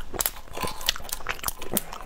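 Shell of a raw prawn crackling and snapping in quick, irregular clicks as it is pulled apart by hand.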